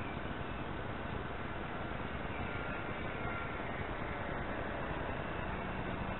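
A steady rushing noise with a faint, high motor whine from a distant radio-controlled model floatplane flying over the lake, its pitch drifting slightly.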